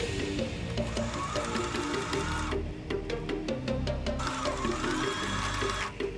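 Sewing machine stitching through fabric, its needle striking in quick even clicks, under background music.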